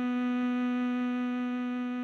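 Tenor saxophone holding one long, steady note of a slow melody.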